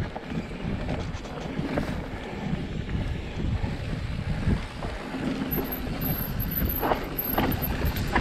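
Wind buffeting the camera microphone as a Giant Reign mountain bike rolls down a dirt singletrack, with a steady low rumble of tyres on dirt. Near the end come a few sharp rattling clicks from the bike over rougher ground.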